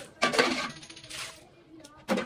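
Water poured from a small plastic mug splashing onto wet, muddy soil in two short bursts, the second weaker than the first.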